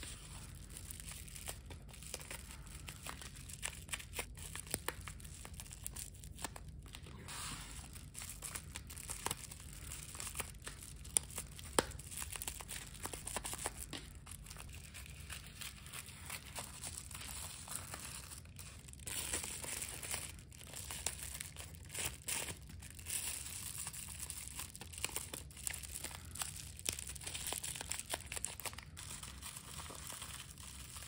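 Plastic bubble wrap crinkling and crackling as it is folded by hand around small crystals and cut with scissors, with many small sharp clicks and a couple of louder snaps near the middle.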